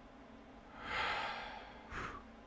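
A man's long, audible sigh, a breathy exhale that swells about a second in and fades away, followed by a short second breath near the end.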